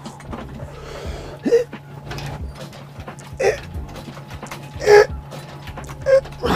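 A man exhaling hard with a short voiced grunt on each bench-press rep, three times about a second and a half apart, over a steady low hum.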